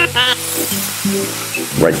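A sizzling-pan sound effect from an interactive children's slideshow: an even frying hiss that starts about half a second in and lasts about a second, over looping chant music.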